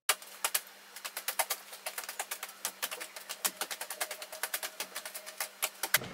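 A rapid, irregular run of sharp clicks and taps, several a second, over a faint steady hum. It starts abruptly after a moment of silence.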